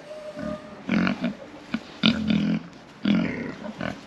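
Oxford Sandy and Black pigs grunting: three short, low grunts about a second apart.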